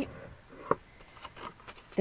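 Faint rubbing of a bone folder burnishing the folds of cardstock, with one sharp click about two-thirds of a second in.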